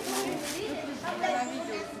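People talking and chattering, with one voice repeating "ya, ya" in a sing-song way; nothing besides the voices stands out.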